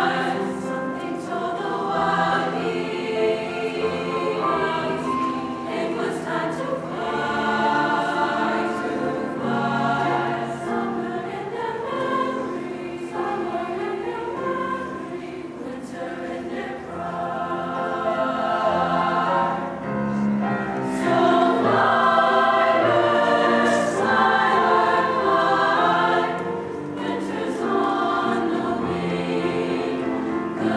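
High school concert choir singing in parts with grand piano accompaniment, growing louder about two-thirds of the way through.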